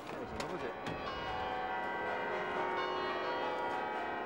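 Church bells ringing, many overlapping tones sounding together, building up about a second in. A few sharp clicks come in the first second.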